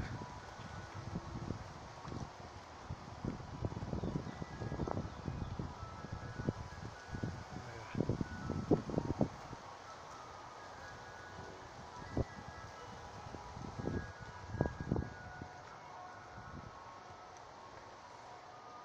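Wind gusting across a phone microphone, heard as irregular low rumbles and buffeting, with faint short high notes scattered through.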